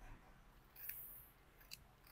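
Near silence: faint room tone, with a soft brief rustle about a second in and a small click near the end.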